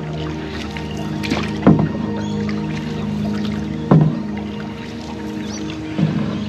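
Wooden canoe paddle strokes pulling through the water, one about every two seconds, over background music with held tones.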